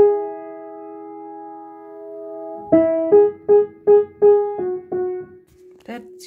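Upright piano playing a major third as an interval-recognition example: the two notes held together for about two and a half seconds, then played one after the other, back and forth, about seven times.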